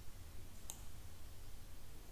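A single sharp computer mouse click about two-thirds of a second in, over a faint low room hum.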